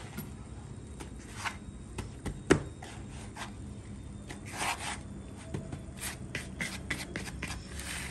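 Hands pressing and turning breaded cutlets in dry breadcrumbs in a plastic bowl: soft scraping and rubbing of crumbs with scattered light taps and clicks, one sharper tap about two and a half seconds in.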